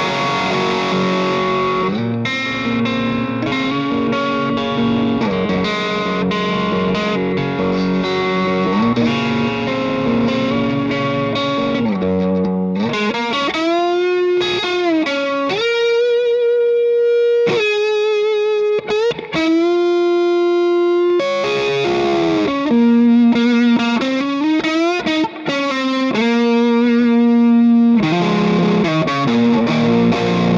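Les Paul electric guitar played through a Lunastone Big Fella True Overdrive pedal with the drive engaged. It opens with overdriven chord riffing, then about thirteen seconds in changes to single-note lead lines with string bends and vibrato. Chords return near the end.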